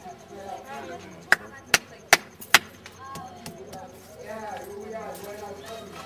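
Four sharp knocks in quick, even succession, about 0.4 s apart, over street voices and a laugh.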